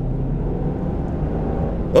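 In-cabin engine and road noise of a 1997 BMW M3 with its S52 straight-six, running steadily at cruise.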